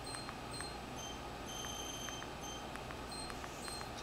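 Faint menu navigation sounds from the XBMC media-center interface as a list is scrolled: short high electronic blips, repeating several times a second, with soft clicks among them.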